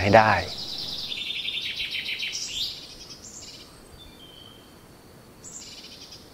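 High-pitched chirping and trilling from outdoor wildlife: a rapid pulsed trill that steps up in pitch over the first few seconds, then fainter calls and a short call near the end.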